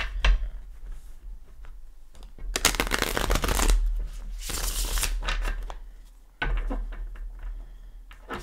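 A tarot deck being shuffled by hand: a few light taps and clicks of the cards, then two long bursts of flicking card noise in the middle, the first about a second long, followed by quieter handling of the deck.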